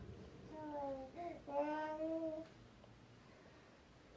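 A person's voice singing or crooning a few drawn-out notes: a slightly falling note, a short rising one, then a longer note that rises, stopping about two and a half seconds in.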